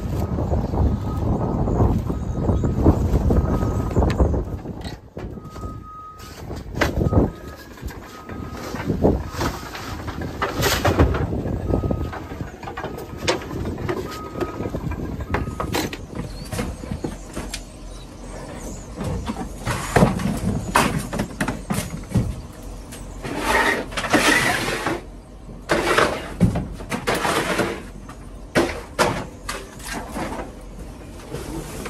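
Junk being unloaded from the back of a box truck: plastic-wrapped mattresses and furniture dragged across the metal floor and thrown out, with repeated thuds, knocks and crackling plastic. A faint beep repeats at even spacing through the first half.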